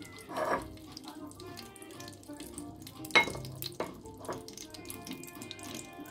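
Palm oil heating in a pot with a faint frying hiss, and a couple of sharp knocks from a wooden spoon against the pot about three and four seconds in. Faint background music runs underneath.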